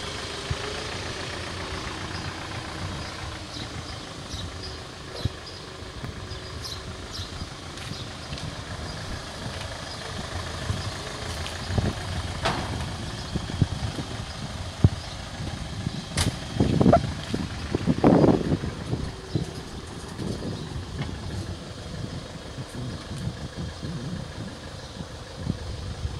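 Iseki 467 tractor's diesel engine running steadily at idle, with a few sharp knocks and some louder surges about midway through.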